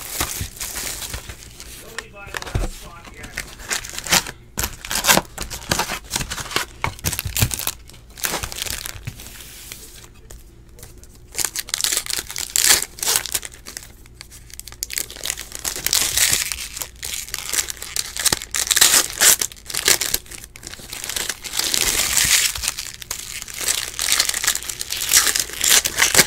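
Foil wrappers of 2018 Topps Stadium Club baseball card packs being torn open and crinkled by hand: irregular crackling rustles that come and go, with quieter gaps between packs.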